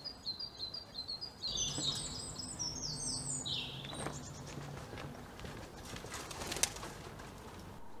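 Birds chirping outdoors: a quick run of short high notes through the first half. A low steady hum sits under the birdsong for a few seconds from about a second and a half in, and a single sharp click comes near the end.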